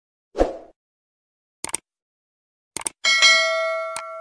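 Subscribe-button animation sound effect: a thump about half a second in, two quick double mouse clicks, then a bell ding near the end that rings on and slowly fades.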